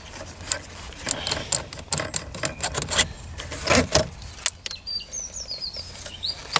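Scattered clicks, knocks and rustling of a car's plastic gear-lever surround and cloth gear boot being handled and lifted off the gear lever, with a busier flurry of handling noise a little past halfway.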